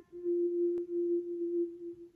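A single sustained pure tone held at one pitch, swelling and dipping slowly in loudness, with one faint click about midway. It thins out near the end.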